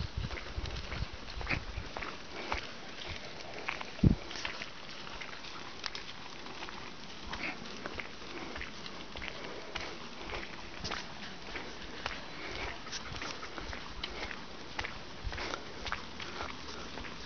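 Footsteps of people and dogs walking on a dirt track, with many small scattered clicks and scuffs from paws and steps, and one sharp thump about four seconds in.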